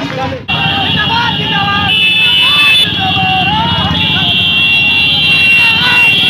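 Motorcycle rally in a street procession: many men shouting and cheering over engine noise, with several shrill steady tones held through it. The sound changes abruptly about half a second in.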